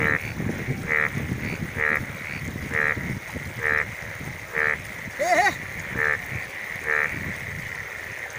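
A frog calling over and over, one short croak about every second. Under it is a low rush of water and wind that dies down after about six seconds, and a single wavering cry comes near the middle.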